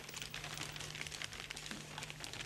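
A sheet of paper rustling and crinkling in the hands as it is folded and creased, a dense patter of small crackles, over a steady low electrical hum.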